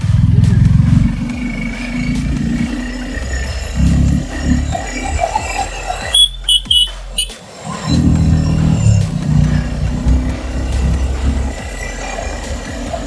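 Suzuki Gixxer SF 250 single-cylinder motorcycle under way uphill, its engine mixed with heavy wind rumble on the camera microphone. The rumble cuts out for about a second around six seconds in.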